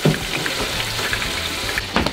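French fries sizzling in the hot oil of an electric deep fryer, a steady hiss with fine crackle as the chips finish cooking.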